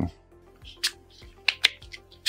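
Wooden Rune Cube puzzle box being handled, its wooden pieces giving a few sharp clicks as they are slid and pressed into place, mostly in the second half.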